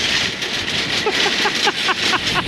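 A man laughing in short repeated bursts from about a third of the way in, over the steady noise of a shopping cart being pushed across asphalt.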